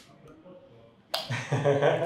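A sharp click about a second in, then a man's voice: a short vocal sound without clear words.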